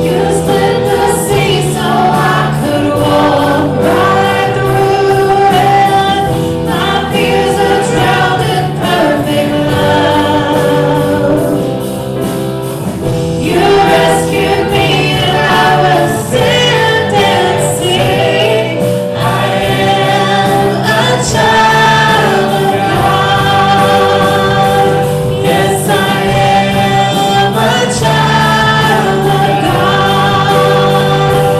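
Live Christian worship music: singers with electric guitar, bass guitar and keyboard playing a slow congregational song.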